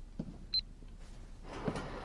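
Soft footsteps on a hard floor, with one short, high electronic beep about half a second in. A hiss-like swell of sound comes in near the end.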